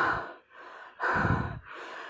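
A singer's audible breaths close to the microphone between sung phrases: a sharp intake right at the start and a second, heavier one just after a second in, with fainter breath noise between them.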